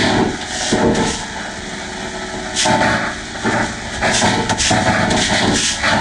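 A children's karaoke song so heavily distorted by audio effects that it comes out as a dense, harsh noise, with its level jumping up and down every second or so.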